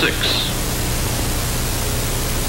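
Steady hiss with a faint low hum, the background noise of an old film soundtrack transfer; the last sound of a narrator's word trails off in the first half-second.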